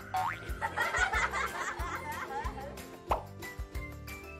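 Upbeat children's background music with a steady low beat. Cartoon-style rising glide sound effects play over it, one just after the start and another about three seconds in.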